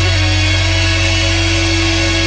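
Live rock band with electric guitars, bass and drums holding one long, steady chord, loud, with a high wash over it, typical of the closing sustained chord of a song.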